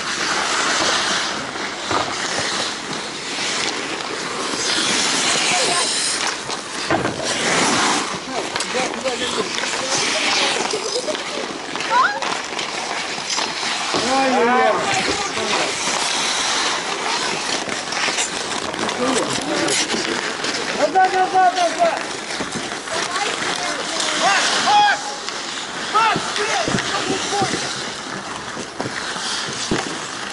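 Ice hockey skates scraping and carving across an outdoor rink, with sharp clacks of sticks and puck against the ice and boards. Players' shouts rise over it several times.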